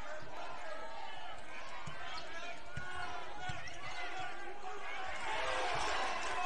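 Basketball game in a gym: the crowd's chatter with the ball thudding on the hardwood floor a few times, and the crowd noise swelling near the end.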